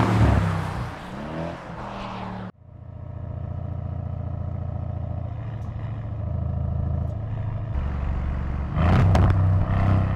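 Mercedes-AMG E 63 S Estate's twin-turbo 4.0-litre V8 driving hard: loud acceleration with the pitch swinging, cut off suddenly about two and a half seconds in. A steady, even engine note follows for several seconds, then a loud burst of acceleration near the end.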